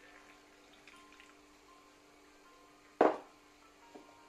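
A thin stream of water trickling from a glass jug into a glass of flour, faint under quiet background music. About three seconds in, a single sharp clink as a metal spoon goes into the glass, the loudest sound here.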